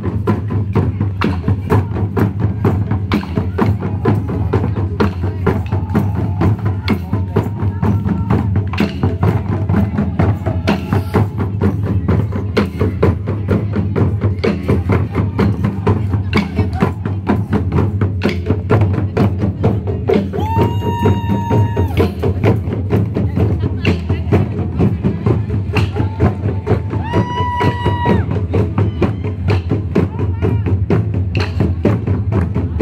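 Taiko ensemble beating large Japanese barrel drums in a dense, fast, continuous rhythm. A held high tone rings out twice over the drumming, about two-thirds of the way through and again near the end.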